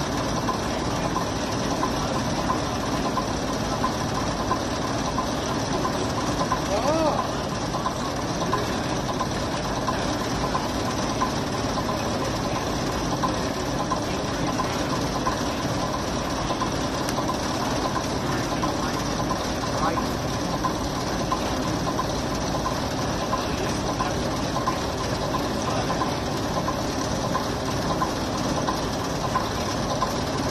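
Leyland OPD2/1 double-decker bus's six-cylinder Leyland O.600 diesel engine idling steadily.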